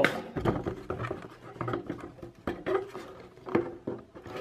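Handling noise of a handheld camera being carried close against a shirt: rustling and scattered small knocks and bumps, with a heavier low thump about half a second in.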